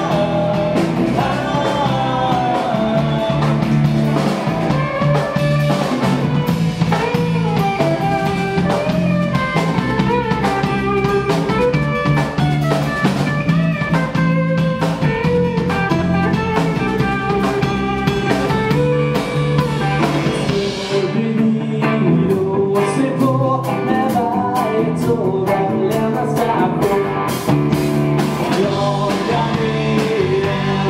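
Rock band playing: a man singing lead over electric guitar, bass and drums. The bass drops out for a few seconds about two-thirds of the way through, then the full band comes back in.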